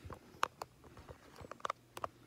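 A few light clicks and taps from handling: one about half a second in, then a quick cluster near the end, over a faint steady hum.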